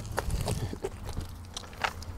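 A wet cast net being gathered up off gravel, with a few scattered crunches and clicks on the grit over a low rumble.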